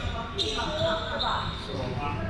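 A volleyball knocking on a hardwood gym floor, with players' voices in the large hall.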